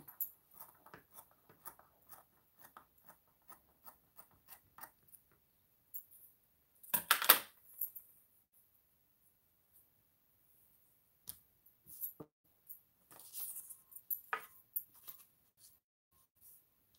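Scissors snipping through cloth, a run of small quick snips at about three a second over the first five seconds. About seven seconds in comes one loud swish of the cloth being handled, then scattered soft rustles and taps as it is laid flat on the table.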